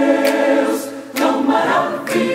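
Mixed choir singing a cappella in four-part harmony in Portuguese. A chord is held on 'Deus' for about a second, followed by a brief break, then the next phrase, 'Tão maravilhoso', begins.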